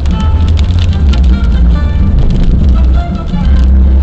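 A short musical jingle of held tones, playing from a car radio between broadcast segments, over the car's steady low engine and road rumble.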